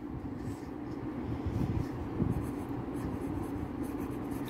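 Ballpoint pen writing on ruled notebook paper: soft, irregular scratching strokes over a low steady background hum.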